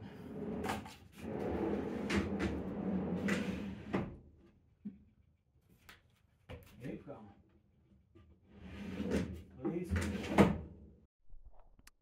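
A large plywood drawer rolling on a heavy-duty steel drawer slide as it is pushed in, a rumble of about four seconds ending in a knock. A few small ticks follow, then a second push ending in a loud thump near the end. The drawer stops short of closing all the way because a spring in the slide's locking mechanism is jammed.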